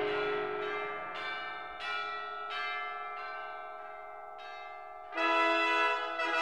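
Bells pealing in an operatic orchestral recording: a series of separate bell strokes, roughly one a second, each ringing and dying away over a fading orchestral chord. A louder full orchestral chord comes in near the end.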